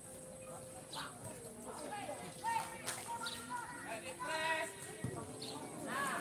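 Players and spectators calling and shouting across an open football pitch, with a longer call about four seconds in and a couple of short knocks.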